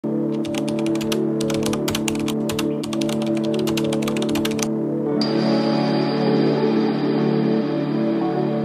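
Computer keyboard typing sound effect, a quick run of keystrokes that stops about four and a half seconds in, over steady background music that carries on alone.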